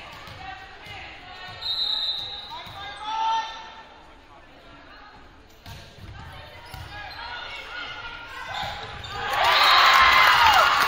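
Volleyball rally in an echoing gymnasium: thuds of the ball being struck and calls from players and spectators, then the crowd breaking into loud cheering about nine seconds in as the point ends.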